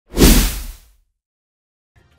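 A single whoosh sound effect with a deep bass hit, starting suddenly and fading out within about a second.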